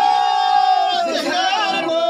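A loud, high-pitched singing voice holds one long note for about a second, then wavers through a short ornamented run and settles on another held note.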